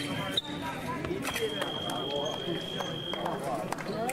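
Electric fencing scoring machine giving a steady high beep for about two seconds, starting about a second in, the signal that a touch has landed. Background voices and sharp clicks of footwork and blades run under it.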